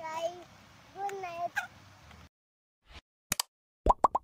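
A young child's voice making two short, high, sing-song vocal sounds. The audio then cuts out, and a few sharp clicks and pops from an animated subscribe-button sound effect follow near the end.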